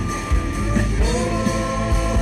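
Live band music with drums and bass guitar; a man's singing voice slides up into a long held note about halfway through.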